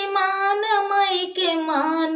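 A woman singing a dehati pachra, a rural devotional folk song to the goddess, unaccompanied, in long held notes that bend in pitch, with a downward dip near the end.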